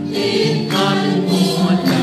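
Traditional Lao ensemble music: boat-shaped wooden xylophones (ranat) played together with singing voices, over a regular struck beat.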